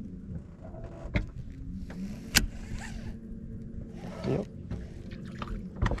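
Boat's electric trolling motor humming steadily, its pitch sliding briefly as the speed changes, with a few sharp knocks over it.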